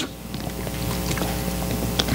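Steady low hum of sanctuary room sound with faint sustained tones, during a pause in the preaching.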